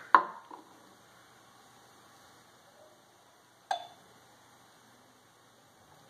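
Handling of a plastic honey bottle over a glass jug: a sharp click just after the start, then quiet while the honey pours, and a lighter knock with a brief ring nearly four seconds in.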